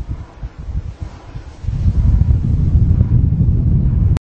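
Wind buffeting the microphone: an irregular low rumble that grows heavier and louder about halfway through.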